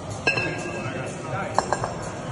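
A pair of 14 kg competition kettlebells knocking together with a ringing metallic clink about a quarter-second in, then a quick cluster of three or four sharper clinks near the end, as the bells come down from overhead lockout into the swing of a long cycle rep.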